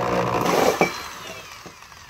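Electric drill driving a hole saw through a plastic motorcycle fairing, running steadily, then released just under a second in, its motor whining down in falling pitch.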